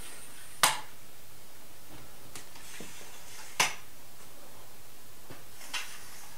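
A large metal light stand being extended, its tube sections sliding up with two sharp clicks a few seconds apart and a few fainter ticks between.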